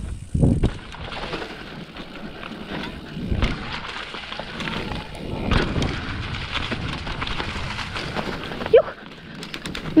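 Transition Patrol mountain bike rolling slowly down a steep dirt trail buried in dry leaves, ridden on the brakes. Tyres rustle and crunch through the leaves, with rattles and a few dull thumps over bumps.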